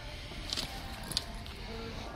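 Faint background music over a steady low hum, with a couple of soft clicks about half a second and a second in.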